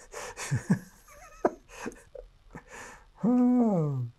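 A man breathing, with a few small clicks, then a drawn-out wordless vocal sound that falls in pitch in the last second.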